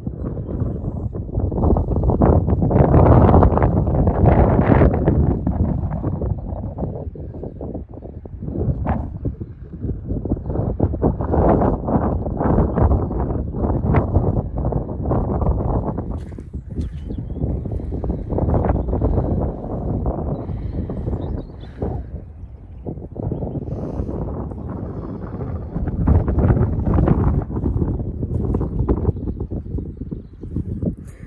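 Wind buffeting the microphone in strong gusts that swell and fade, loudest a few seconds in and again near the end.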